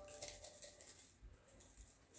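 Near silence with a faint patter of dry spice rub being shaken from a plastic cup onto raw chicken wings in a metal pan.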